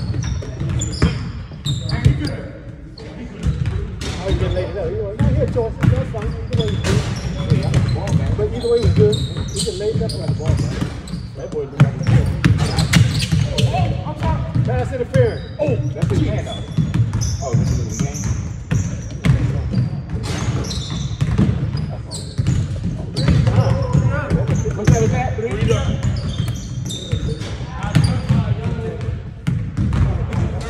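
Basketballs bouncing on a hardwood gym floor, an irregular string of sharp thumps, under indistinct talk from players.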